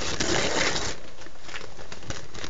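Newspaper being crumpled and pushed into a cardboard toilet-roll tube: a dense paper rustle for about the first second, then scattered crinkles.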